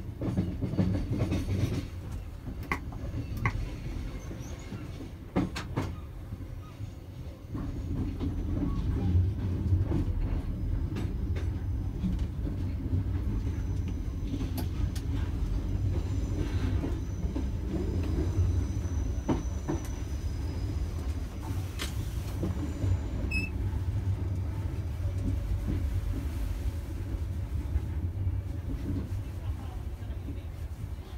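Class 319 electric multiple unit running slowly over points into a terminus platform, heard from on board: a steady low rumble with scattered wheel clicks over rail joints and crossings, growing louder about a quarter of the way in. A faint high squeal comes in around the middle.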